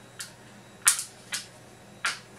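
Plastic case halves of a DVD remote control pressed together by hand, their snap-fit latches clicking into place: four short sharp clicks, the loudest about a second in.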